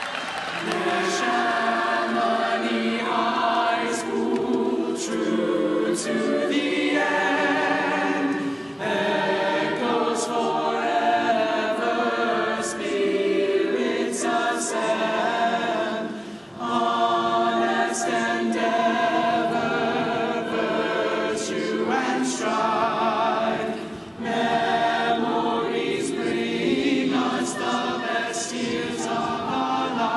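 A choir singing a cappella in slow, held phrases of about eight seconds, with a brief breath between phrases.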